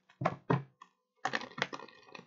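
Tarot cards being handled on a table: short taps and clicks, two near the start and a quicker cluster in the second half.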